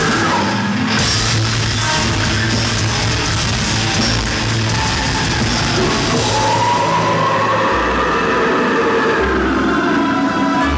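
Heavy metal band playing live: distorted electric guitars and a drum kit. From about six seconds in, a sustained high line rises in pitch over the band.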